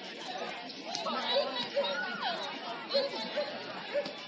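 Indistinct chatter of many voices talking at once, with a few short clicks and a run of brief repeated tones.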